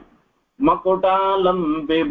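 After a brief moment of silence, a man's voice begins chanting a verse about half a second in, in a steady, held sing-song intonation.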